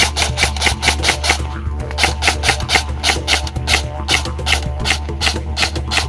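EMG Salient Arms GRY M4 airsoft electric rifle (AEG, G&P i5 gearbox) firing a rapid string of semi-auto shots, about six or seven a second, each a sharp crack of the motor-driven piston, stopping just before the end. Background music plays underneath.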